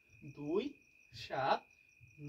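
Crickets trilling in the background: one steady high tone that never breaks, under a man's few spoken words.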